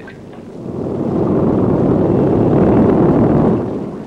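A Spitfire coming down onto the sea: a rumbling roar that swells from about half a second in, holds, and fades near the end.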